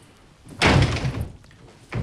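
A panelled door slammed shut about half a second in: one loud bang that dies away over about half a second.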